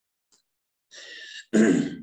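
A man clearing his throat once, loud and brief, just after a short breath about a second in.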